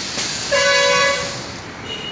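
A steady horn-like beep with a single fixed pitch, lasting about a second, starting about half a second in.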